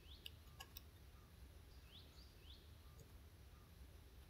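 Near silence: quiet room tone with a few faint, short rising bird chirps in the background and a few faint clicks in the first second.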